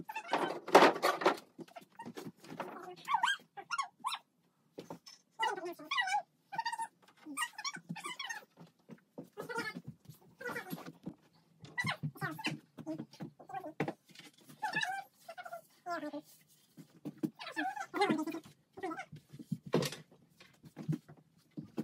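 A person's voice in short, broken phrases, with many pauses.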